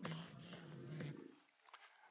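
An elderly man's low, gravelly voice speaking slowly, trailing off into a pause after about a second and a half.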